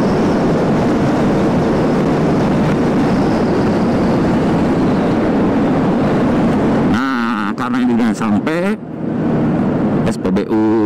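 Loud wind rush on the rider's microphone over the Yamaha NMAX 155 scooter's single-cylinder engine, cruising at about 100 km/h and then slowing. About seven seconds in, the wind noise drops away abruptly.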